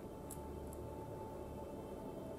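Quiet room tone with a steady low hum, and a few faint soft clicks in the first second from fingers handling a lemon studded with cloves.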